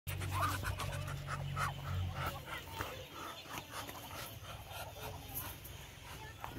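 Muscovy ducks at close range making short breathy huffs and soft calls, many in quick succession, with a low rumble during the first two seconds.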